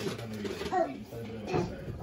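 Faint, muffled voices talking in the background, with no clear words.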